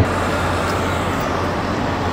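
Steady road traffic noise: a constant hum of vehicles with an even wash of noise over it.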